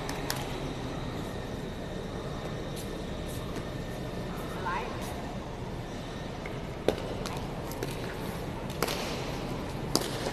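Steady hum of a large indoor sports hall with faint distant voices, and a few sharp, short knocks, the clearest about seven and nine seconds in.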